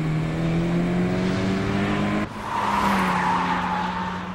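High-performance sports car engines running at speed on an anime soundtrack, their pitch rising slowly. About two seconds in, an abrupt cut switches to another engine note with a rushing noise over it.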